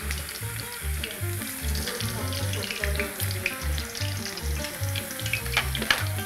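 Thin potato slices deep-frying in hot sunflower oil in a steel pot: a dense, steady sizzle and crackle of frying. Background music with a steady bass beat runs underneath.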